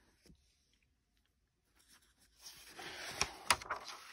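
Quiet, then about two and a half seconds in, the rustle of a picture-book page being turned by hand, with two short sharp snaps of paper in the middle of the turn.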